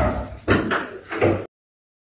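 A door rattling and knocking: a loud noisy bang that fades, then three quick knocks, before the sound cuts off abruptly to dead silence.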